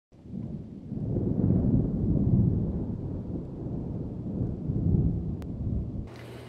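Thunder sound effect: a deep rolling rumble that swells and fades in waves, loudest about two seconds in and again near five seconds.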